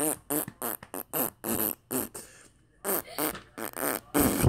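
A child making fake fart noises in a sing-song string of short bursts, a "fart song", with a brief pause a little past halfway.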